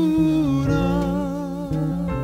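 Male jazz vocalist holding a long sung note with vibrato over a piano and upright-bass accompaniment. The held note changes about three-quarters of the way through.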